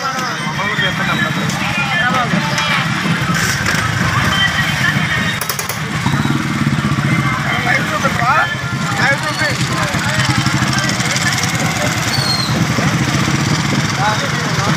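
Several motorcycles running together at riding speed, their engines making a continuous low drone, with people's voices calling out over them.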